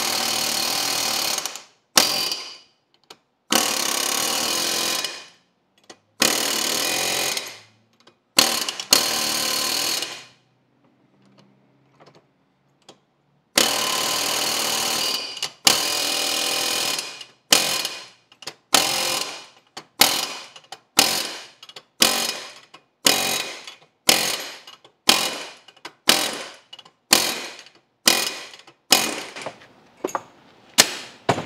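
Pneumatic impact wrench pulling wheel studs into a disc brake rotor hub. It runs in several long bursts of a second or two, then in quick short blips about one a second as the studs seat.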